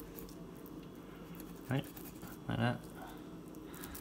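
Quiet room with two short spoken sounds, a man's "right" and a brief vocal murmur; no distinct sound of the knife or fish stands out.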